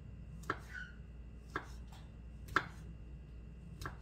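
Kitchen knife slicing through mushrooms and striking a wooden cutting board: four sharp knocks about a second apart.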